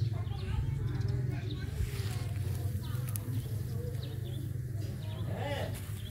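Outdoor background sound: small birds chirping faintly over a steady low hum and indistinct voices, with one short wavering call near the end.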